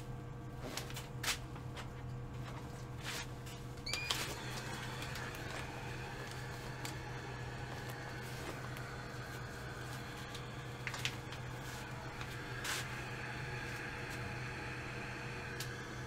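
Scattered clicks and knocks as a Trend Airshield powered respirator helmet with face shield is handled and put on, over a steady low hum. About four seconds in, a faint steady airy whir with a brief rising whine starts, fitting the helmet's fan being switched on.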